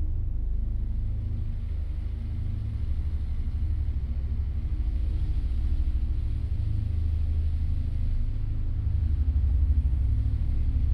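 A steady, deep low rumble with a slight throb, growing a little louder near the end.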